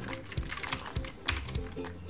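Computer keyboard typing: a run of quick, uneven keystroke clicks, over soft background music.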